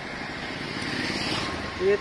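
Road traffic noise: a motor vehicle passing along the street, its sound swelling gently and easing off.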